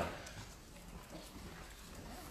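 Faint room tone of a lecture hall: a low steady hum with a faint click near the start.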